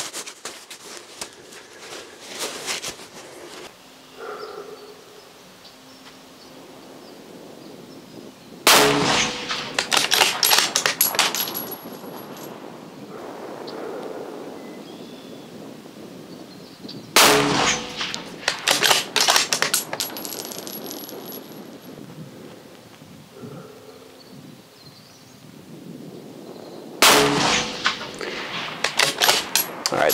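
Three rifle shots from a 6.5 Creedmoor bolt-action rifle with a muzzle brake, spaced about eight and ten seconds apart. Each shot is followed by a few seconds of sharp clicks and metallic clangs.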